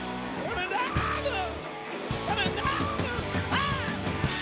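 Live rock band playing with electric guitars, bass and drums, while a lead line bends up and down in pitch over the band. The bass and drums drop out for a moment about halfway through, then come back in.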